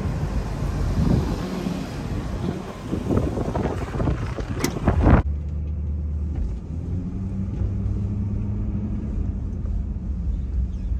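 Wind and street noise while someone climbs into a pickup truck, with knocks and a click, then the truck door slamming shut about five seconds in. After the slam the outside noise is cut off and a steady, muffled low hum of the truck's idling engine is heard from inside the cab.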